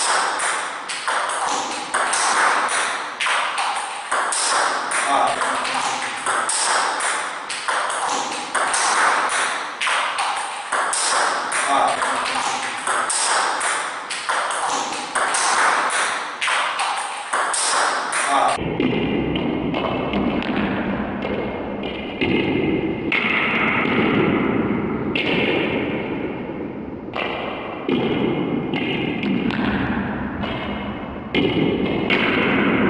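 Table-tennis balls being struck by rubber-faced paddles and bouncing on the table in quick succession, as backhand topspin drives are played against a multi-ball feed. About eighteen seconds in, the sound changes: the ball hits come more spaced out and sit in a fuller, deeper room sound.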